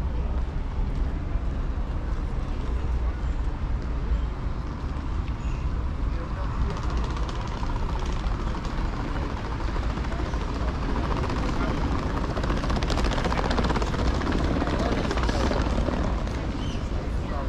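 Outdoor seafront ambience: a steady low rumble, typical of wind buffeting the microphone, under the voices of people nearby. A brighter hiss builds in the second half.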